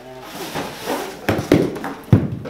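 Cardboard box rustling and scraping as a putter is drawn out of it, with two sharp knocks a little over a second in.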